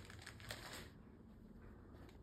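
Brief, faint rustle of a fabric curtain being brushed aside in the first second, then near silence.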